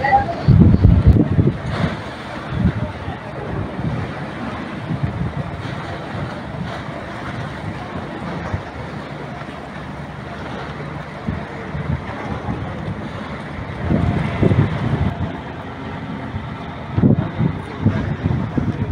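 Wind buffeting the microphone outdoors, a low uneven rumble over a steady hiss, with people's voices in the background now and then.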